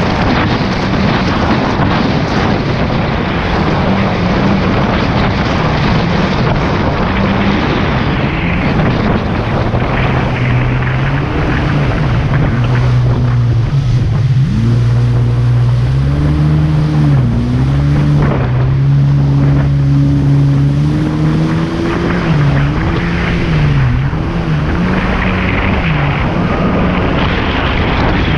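Jet ski engine running at speed, with wind buffeting the microphone and spray hissing. For the first few seconds the wind and water noise dominate. After that the engine note comes through, dipping and rising several times as the throttle changes.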